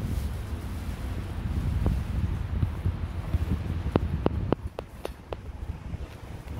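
Wind buffeting a phone's microphone outdoors: a steady low rumble. About four seconds in comes a quick run of about six light clicks, a few per second.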